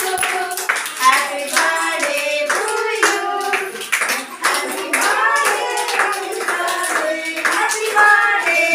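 A group of women and young children singing together while clapping their hands in time.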